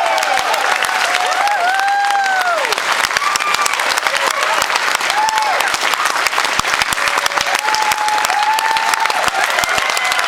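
A crowd applauding: dense, steady clapping that fills a room, with voices shouting cheers over it a few times, about a second and a half in, around five seconds and again near the end.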